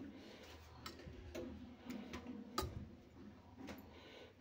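Faint, irregular clicks and light scrapes of a steel spoon against steel bowls as porridge is spooned from one bowl into another, the loudest click about two and a half seconds in.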